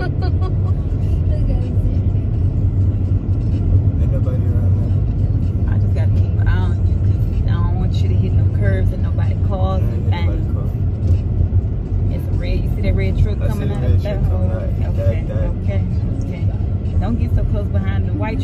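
Steady low rumble of a car's engine and tyres heard from inside the cabin while driving, with voices talking on and off over it.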